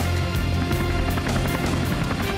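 Soundtrack music with a steady beat and sustained low notes.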